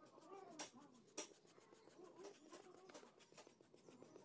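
Pencil shading strokes on paper, quiet: two sharper scratching strokes about half a second and a second in, then fainter scraping.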